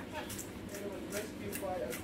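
Hand-twisted pepper grinder grinding peppercorns over a pot: a run of short, scratchy grinding strokes, about two or three a second.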